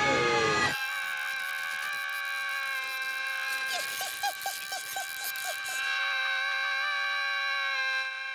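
Cartoon soundtrack: a brief falling sweep, then a long, steady high-pitched tone held for several seconds, with a run of about eight quick chirps in the middle.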